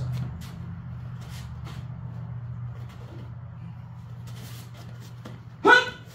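A steady low mechanical hum with no change in pitch, with faint scattered ticks and rustles of movement over it. A man speaks one word near the end.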